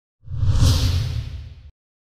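A logo-sting whoosh sound effect over a deep rumble. It swells in a moment after the start and cuts off suddenly after about a second and a half.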